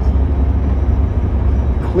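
Heavy truck driving, heard inside the cab: a steady low rumble of engine and road noise.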